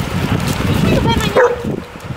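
Black Labrador whining, with a few short rising yelps about a second in, eager for a stick to be thrown to retrieve.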